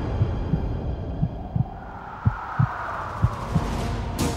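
Dramatic sound effect of low heartbeat thuds, several in close pairs. A soft whooshing swell rises and fades under them in the middle.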